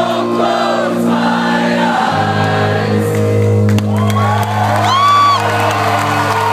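Rock band playing live with voices singing, heard from within the audience: sustained guitar and bass chords, shifting to a lower bass note about two seconds in, with a held sung note near the end.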